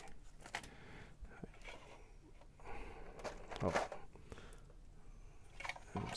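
Soft crinkling of clear plastic parts bags and scattered light clicks of plastic figure parts being handled, with a short vocal murmur a little past halfway.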